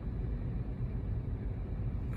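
Low, steady rumble of a car, heard from inside the cabin.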